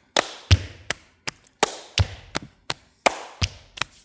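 Body percussion by two players: two slaps on the chest, a handclap and a finger snap in a repeating rhythm. The deep chest thumps come round about every one and a half seconds, with sharp claps and snaps between them.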